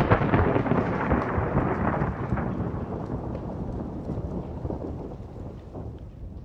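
A long crackling rumble that fades away gradually.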